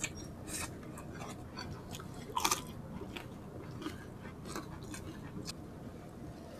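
Chewing and wet mouth sounds of people eating rice and crispy pork by hand, with a louder crunchy bite about two and a half seconds in.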